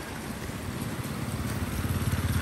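Motorcycle engine running as the bike approaches on a wet road, getting steadily louder.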